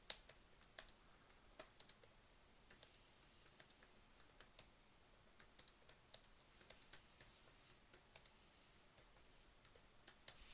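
Faint, irregular keystrokes of someone typing on a computer keyboard.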